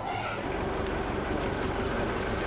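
A short laugh at the very start, then a steady low rumble of outdoor background noise.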